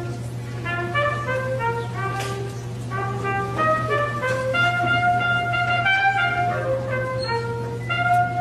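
A school concert band of brass and woodwinds playing a slow melody, note by note, shakily and poorly together, over a steady low hum.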